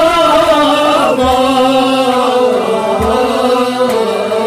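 Kashmiri Sufi song: a male singer holds long, ornamented notes in a chant-like line over a steady drone, with a couple of low drum beats underneath.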